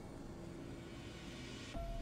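Background music: a held low note under a hiss that swells louder, then a new phrase of notes comes in just before the end.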